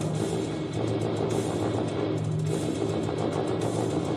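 French horn and tuba holding low notes over a noisy haze; a steady low tone comes in about two seconds in.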